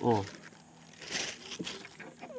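Plastic bag crinkling as it is handled, in short rustling bursts a little after a second in.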